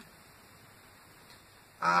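A pause in speech with faint room tone, then near the end a woman's held, steady-pitched "um".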